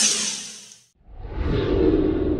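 An edited whoosh sound effect that sweeps down in pitch and fades out before a second in. About a second in, a deep rumbling swell takes over.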